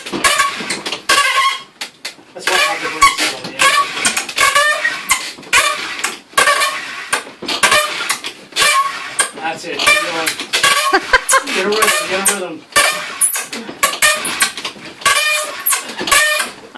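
Giant friction fire drill: a cedar fence-post spindle squeaking against the wooden hearth in short, wavering squeals, about two a second, as the cord spins it back and forth. In friction firemaking, this squeaking is the sign that the wood has glazed to a sheen and the drill has not yet broken through to real friction.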